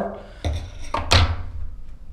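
Two dull knocks about half a second apart, then a short hiss that falls away quickly.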